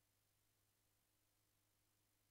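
Near silence: faint line hiss with a steady low electrical hum.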